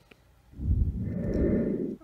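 A person's breath blowing close to the microphone: a long, loud, rumbling exhale that starts about half a second in and runs until speech begins.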